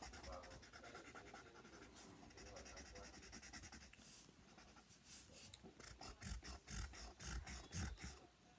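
Felt-tip marker rubbing back and forth on paper in a run of short, quick coloring strokes, faint at first and quicker and a little louder in the second half.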